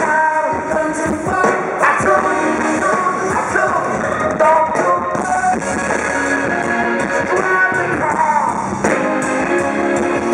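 Live rock band playing in an arena: drums, electric guitar, bass and keyboards with a male lead vocal, recorded from the audience.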